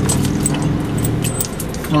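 Steady engine and road noise inside a moving car's cabin, with light metallic jingling and clinking, several small clinks with a bright ringing tone.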